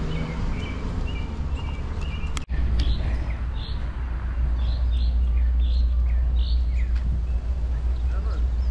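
Birds chirping in short, repeated calls over a steady low rumble, with the sound dropping out for an instant about two and a half seconds in.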